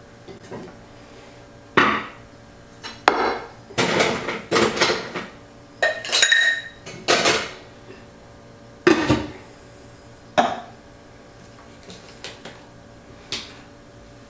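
Metal cocktail shaker tin being handled and set up: about a dozen separate clanks and clinks of metal on metal and glass, one near the middle ringing briefly.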